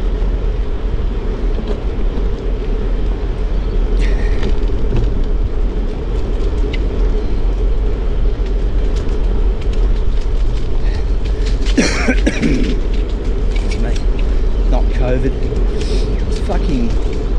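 Steady wind buffeting the microphone and tyre rumble from a bicycle rolling along a paved path, loud and continuous. A brief sound with a sliding pitch cuts through about twelve seconds in.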